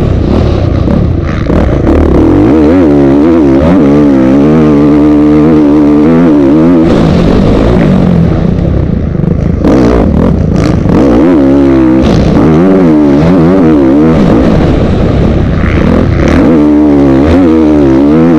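Motocross bike engine heard loud and close from the bike itself, revving hard and backing off again and again, its pitch climbing and falling several times as the rider accelerates and slows around the track.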